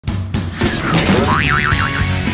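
Intro jingle music with a cartoon sound effect whose pitch wobbles up and down about four times near the end, over a steady low bass note.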